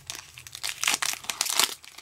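Foil wrapper of a Pokémon trading card booster pack crinkling and tearing as it is pulled open by hand, in a run of quick, irregular crackles.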